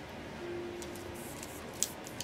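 Quiet handling of flexible plastic pipes being bent by hand: a faint, briefly held squeak early on, light ticking, and a sharper click near the end.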